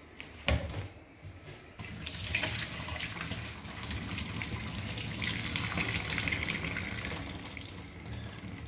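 Cooking water from a pot of boiled pumpkin and potatoes being poured through a mesh sieve into a stainless steel sink: a steady splashing pour that starts about two seconds in. A short knock comes about half a second in.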